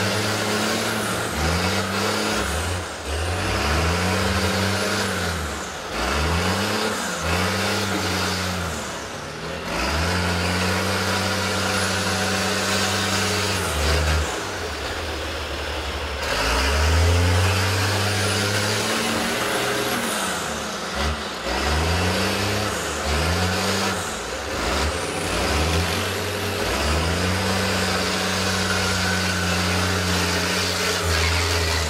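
School bus engines revving up and down again and again, each rev climbing and falling back over a second or two, with a few longer steady pulls between.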